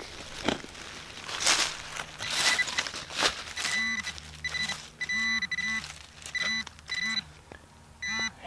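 A hand digging tool scrapes and crunches through soil and leaf litter. Then, about halfway through, a metal-detecting pinpointer probed into the hole gives a run of short beeps, about seven bursts, as it homes in on a buried copper coin.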